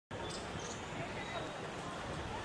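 Outdoor ambience: a steady background hiss and rumble with faint distant voices and a few brief high chirps in the first second.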